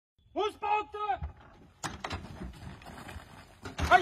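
A man shouts three short, sharp calls, like a drill command. About two seconds in comes a knock, followed by irregular footsteps on gravel, and another shout begins near the end.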